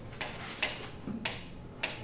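Chalk writing on a chalkboard: short taps and scratches as each stroke is made, about four in two seconds.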